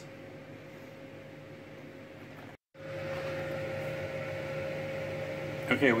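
Faint room noise, then, after a brief dropout about two and a half seconds in, a steady electric hum with one fixed tone, like a running fan or appliance motor.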